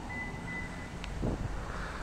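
Outdoor street ambience: a low steady traffic rumble with wind on the microphone. A faint, steady high-pitched tone sounds for about the first second and ends with a click.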